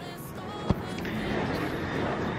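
Handheld camera being picked up and moved, with rustling handling noise and a single sharp knock about two-thirds of a second in.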